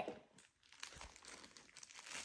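Faint crinkling of a plastic packaging bag being handled, with a few soft rustles spread through.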